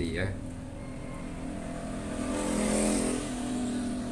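A motor vehicle's engine passing, a steady drone that builds to its loudest about three seconds in and then eases off.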